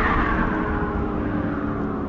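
Science-fiction spacecraft engine sound effect: a steady low rumble with a whoosh that falls in pitch over the first second.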